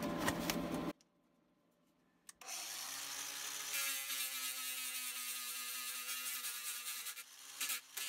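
Cordless Makita angle grinder with a sanding disc working the bare steel van floor, cleaning it back to metal around the rust holes ready for welding. A brief scraping sound cuts off about a second in. After a short silence the grinder spins up and runs with a steady whine and the hiss of the disc for about five seconds.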